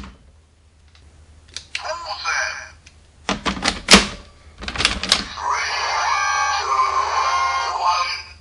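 Sharp plastic clicks as a Gaia Memory toy is handled and snapped into a DX Accel Driver toy belt. They are followed by the belt's electronic voice and sound effects, which play for the last two or three seconds.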